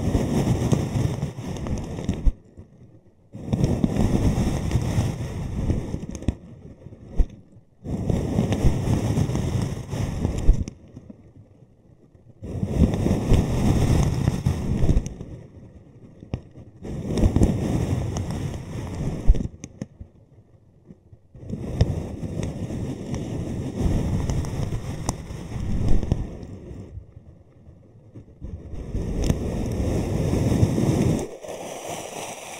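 Styrofoam balls rustling and crunching inside a plastic bag as it is handled, in about seven bouts of two to five seconds with short pauses between them.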